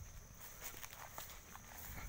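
Faint footsteps through grass and weeds, a few light crackles of leaves and stems underfoot, over a steady high-pitched whine in the background.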